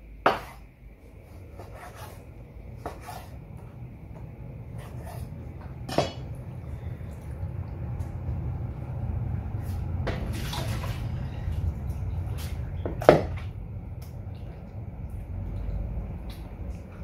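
Kitchen knife cutting raw chicken breast on a wooden cutting board, with three sharp knocks of knife and hand on the board and a few fainter taps, over a low steady rumble.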